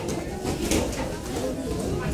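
Indistinct voices echoing in a martial-arts gym during sparring, with one sharp knock about a third of the way in, likely a padded kick or punch landing.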